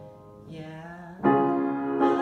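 Grand piano chords: a fading chord, a softer chord about a quarter of the way in, then a loud full chord struck a little past the middle and left ringing.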